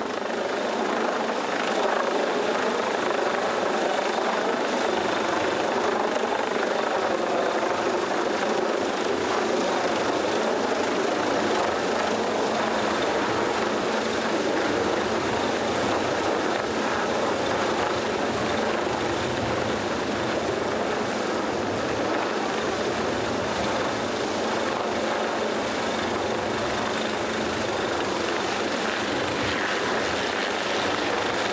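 Coastguard search-and-rescue helicopter hovering close overhead while winching, a steady, loud rotor and engine din heard from the yacht's deck. It swells over the first couple of seconds, then holds steady.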